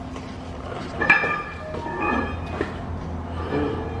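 Steel axle shaft of a five-ton Rockwell axle being slid out of its housing by hand: metallic clinks and scraping, with a sharp ringing clink about a second in, over a steady low hum.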